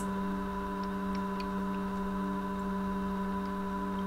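A steady hum made of several held tones, unchanging throughout, with a few faint ticks about a second in.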